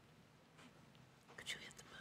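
Near silence: faint room tone, with a few brief soft hissy sounds, like a faint whisper, about a second and a half in.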